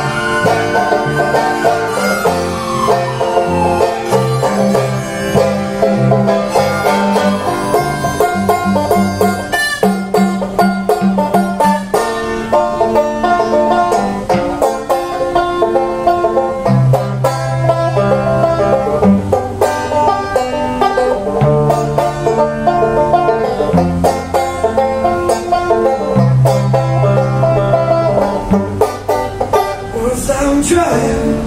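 Banjo picking an instrumental break over a strummed acoustic guitar, with a steady run of low bass notes and no singing. A siren wails in the background during the first few seconds.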